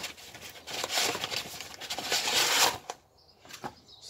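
Sheets of sandpaper rustling and scraping as they are handled and pulled out. It lasts about two seconds, gets louder toward the end, then stops.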